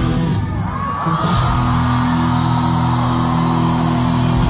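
Heavy rock band playing live in a large hall, heard from within the crowd: a guitar pitch slides down in the first second, then the band holds a sustained ringing chord while the crowd yells.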